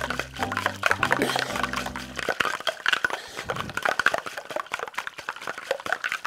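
A single ice cube rattling and liquid sloshing inside a metal cocktail shaker being shaken rapidly, a dense run of quick knocks; the ice is still audible, so the cube has not yet melted. Background music plays under it and stops about two seconds in.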